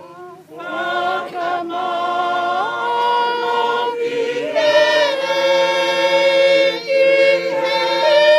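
A choir of voices singing unaccompanied, coming in about half a second in and holding long, steady notes that swell louder.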